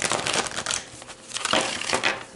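A deck of tarot cards being shuffled by hand, the cards rustling and slapping together in a few quick bursts.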